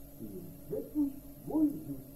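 A man's voice speaking, over steady tape hiss.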